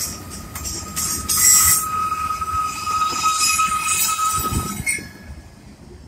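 Freight cars rolling past on a curve, their steel wheels squealing against the rail in a steady high whine over a low rumble. The squeal and rumble drop away suddenly about five seconds in as the end of the train goes by.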